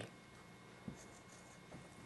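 Faint marker-pen strokes on a writing board, with a light tap of the pen about a second in and a short scratch just after it.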